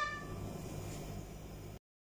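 Faint, steady low hum of background noise after a child's voice trails off, cut off abruptly to dead silence near the end.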